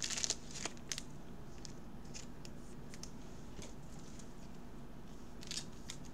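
Short crinkles and clicks of baseball card packs and cards being handled by a gloved hand in the first second, then a faint steady low hum with a few light ticks, and another brief rustle near the end.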